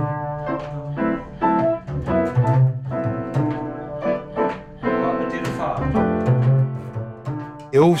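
Upright double bass played pizzicato, plucked notes, with a piano playing along.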